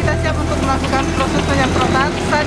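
Voices talking close by over a steady low engine hum, the hum dropping away near the end.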